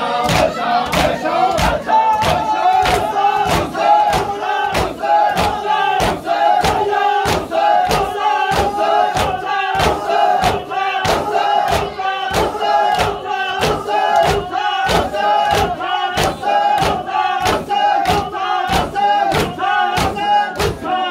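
A group of men chanting a noha together in unison while beating their chests in matam, the blows landing in a steady rhythm of about two and a half a second.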